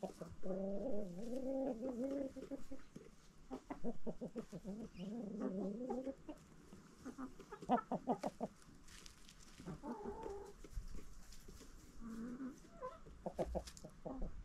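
Backyard chickens clucking: a long wavering call over the first couple of seconds, then runs of quick clucks on and off.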